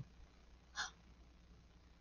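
Near silence: room tone with a faint low hum, and one brief breath intake from the reader a little under a second in.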